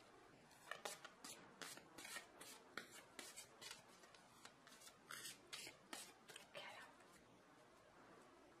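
Tarot cards being shuffled by hand: faint, irregular snaps and rustles of the cards sliding against each other, two or three a second, easing off near the end.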